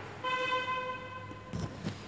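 A single steady horn toot lasting just over a second, followed by a few soft knocks as the camera is handled.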